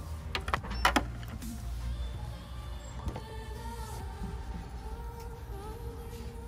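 Background music with held, slightly wavering tones over a steady low hum, broken by a cluster of sharp clicks in the first second, the loudest just under a second in.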